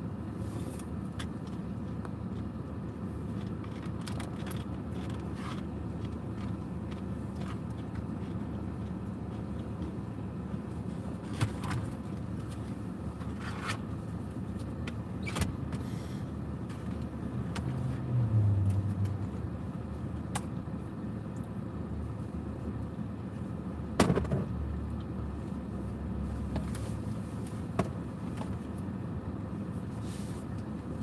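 Steady low rumble inside a car's cabin, with scattered light clicks and handling noises and one sharper knock about three-quarters of the way through.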